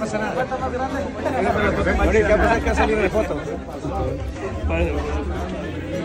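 Many people talking at once in a crowded room: overlapping chatter with no single voice standing out.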